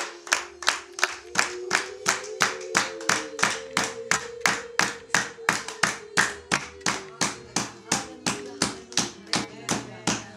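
A group of people singing long, held notes while clapping their hands in a steady rhythm, about three and a half claps a second. The claps are the loudest sound.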